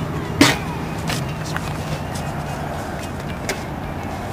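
Steady low hum of a vehicle engine running, with one sharp clack about half a second in and a couple of lighter knocks.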